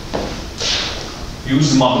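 A click and a brief scraping rustle as a lecturer moves at the whiteboard, then a man's voice starts speaking about one and a half seconds in.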